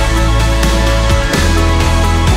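Music with a steady beat and deep bass notes that slide down in pitch, one at the very start and another about a second and a half in.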